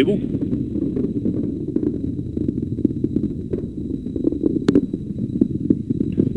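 Atlas V rocket with five solid rocket boosters in powered ascent, a steady rough low rumble of engine roar with scattered crackles and sharp pops, the boosters burning at stable chamber pressure.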